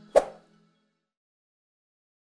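A single short pop, the click sound effect of an animated subscribe button, about a fifth of a second in, over the last faint notes of fading music.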